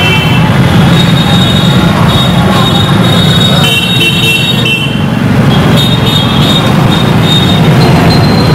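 Motorcycles, scooters and SUVs in a slow procession passing close by on a road, their engines running in a steady, loud mix. Thin high-pitched whining tones come and go over the engine noise.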